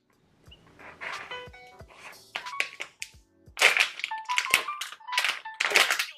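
Clear plastic food pack crinkling in a series of short rustles as it is handled, louder and more frequent in the second half, over soft background music.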